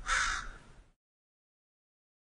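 A single harsh bird caw, about half a second long; then the sound cuts off to silence about a second in.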